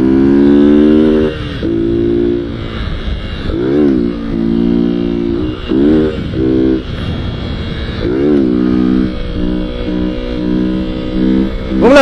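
Motorcycle engine revving under the rider's throttle: steady held notes broken every second or two by quick blips that rise and fall in pitch, as the rider works up to lifting the front wheel into a wheelie.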